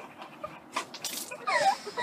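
Stifled laughter through a mouthful of water: a few breathy snorts and sputters about a second in, then a short high squeal that falls in pitch as the laugh breaks out and the water is spat out.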